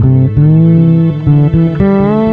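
Sire V7 fretless electric bass playing an improvised melodic line: plucked notes several times a second, some gliding smoothly up or down into the next pitch.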